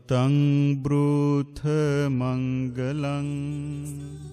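A man's voice chanting Buddhist pirith in Pali: long, low held notes in several phrases with short breaks for breath, dying away near the end.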